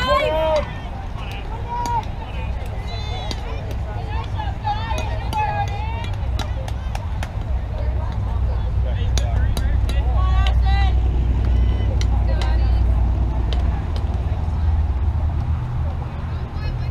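Voices of softball players and spectators calling out and chattering across the field, with a few sharp clicks over a steady low rumble.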